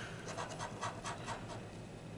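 A coin scraping the coating off a lottery scratch-off ticket in a run of short, quick strokes that die away near the end.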